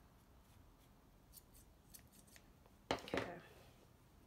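Sharp fabric scissors (Singer Professional) snipping through a wool yarn pom-pom, trimming it: a few faint snips, then one louder snip with a brief ring a little under three seconds in.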